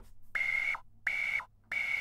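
Empress Zoia digital modular synthesizer playing a tuned-noise patch: noise filtered into breathy, whistle-like notes that sound like somebody who's trying to whistle but doesn't know how. Three short notes, each holding a high pitch and dipping down as it ends.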